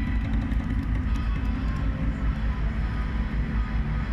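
Steady low rumble of heavy trucks idling in the street, with faint background street noise.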